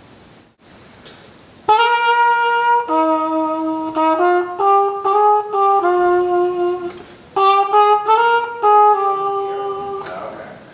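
Trumpet played with a cup mute: a short melody of separate held and moving notes that begins about two seconds in, with a brief break partway through before a second phrase. The muted tone has a paper-like quality.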